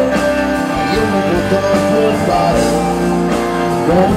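Live rock band playing, with electric guitars.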